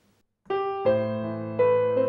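Piano playing starts about half a second in with a single note, then chords struck about every three-quarters of a second, the left hand coming in with a four-note chord accompaniment.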